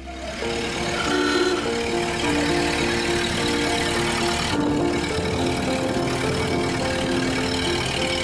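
A 1930 Ford AA truck's four-cylinder engine running as the truck moves off, heard under background music with a steady melody.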